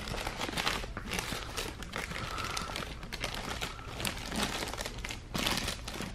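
Paper burger wrapper crinkling and rustling as hands unfold it from around a burger, in irregular crackles, louder briefly near the end.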